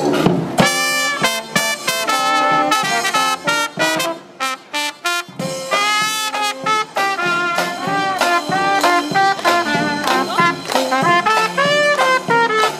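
Small street brass band of trumpet, trombone, saxophone, sousaphone and drums playing an upbeat tune. About four seconds in it thins to short, separated notes, then the full band comes back in.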